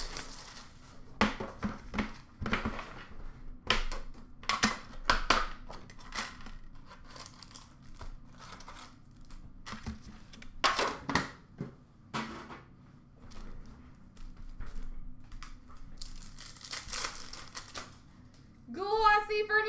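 Upper Deck hockey card pack wrappers crinkling and tearing as packs are ripped open, in irregular bursts of a second or two with short lulls between.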